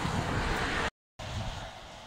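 Road traffic noise from a busy main road, broken by a sudden total dropout about a second in, then a fainter outdoor noise.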